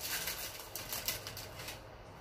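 Handling noise from a cardboard fragrance box being turned over in the hands: a quick run of light rustles and clicks that thins out and fades over the second half.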